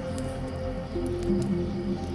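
Soft, slow piano music with held notes, over a crackling fire that gives off a few sharp pops.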